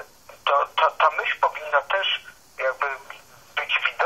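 A person talking over a telephone line, the voice thin and narrow with no low end.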